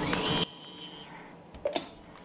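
Japan Post Bank ATM's coin-deposit mechanism running after coins have been dropped in, then cutting off suddenly about half a second in. A couple of short clicks follow near the end.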